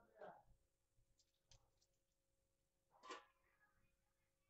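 Near silence: room tone with two brief, faint voice sounds, one at the start and one about three seconds in, and a few light clicks in between.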